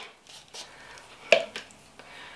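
Faint plastic handling noise with one sharp click a little past halfway, as a self-watering pot's plastic water-level indicator tube is pushed through the pot's plastic bottom plate.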